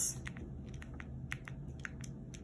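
Faint, scattered small crackles and ticks from the clear plastic cover film on a diamond painting canvas being handled under the fingers, the film clinging to the sticky glue beneath.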